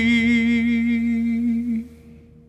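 A man's long held vocal note with vibrato over sustained acoustic guitar, closing the song: it stops shortly before the end and the sound dies away.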